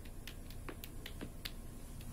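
Irregular sharp clicks, about three or four a second, over a faint low steady hum.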